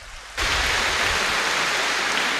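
Congregation applauding. The applause starts suddenly about half a second in and holds steady.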